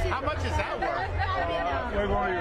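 Several people talking over one another in a crowded room, over a low steady hum.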